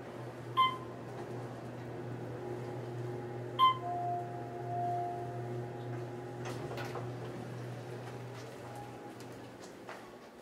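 Passenger elevator in motion: a steady low hum from the car, with two short ringing chimes about three seconds apart.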